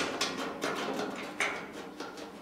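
A few light metal clicks and scrapes as a loosened bolt and steel bracket are shifted by hand against the body panel.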